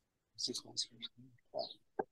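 A few soft, hesitant syllables of a man's voice over a video-call connection, broken by dead-silent gaps, before a full answer begins.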